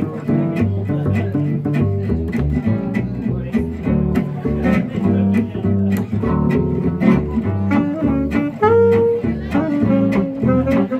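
Gypsy jazz (jazz manouche) quartet playing: acoustic guitars strumming a steady rhythm and picking lines over a plucked upright double bass. A saxophone comes in with long held notes near the end.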